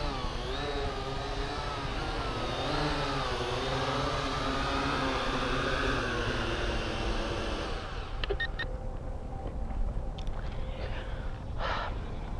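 Syma X8HG quadcopter's brushed motors and propellers whirring as it comes in to land, the pitch wavering up and down with the throttle, heard through its onboard camera. The motors cut out about eight seconds in as it settles in the grass, followed by a few light clicks.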